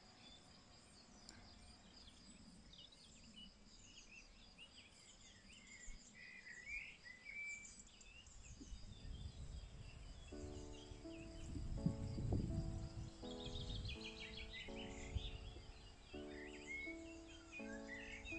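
Faint outdoor ambience of birds chirping, with a steady high insect trill and a low rumble. About halfway through, gentle outro music of sustained, held notes fades in and grows louder toward the end.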